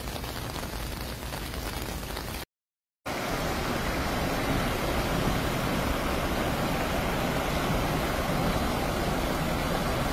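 A steady noisy wash of heavy rain and rushing floodwater. It drops out completely for about half a second, two and a half seconds in, and then comes back louder, a fuller rush of fast-flowing muddy water.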